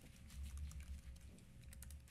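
Faint computer keyboard typing, scattered light key clicks, over a low steady room hum.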